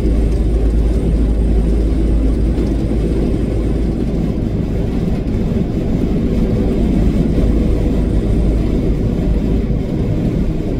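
Steady low drone of a semi-truck's diesel engine and tyre noise, heard from inside the cab while cruising.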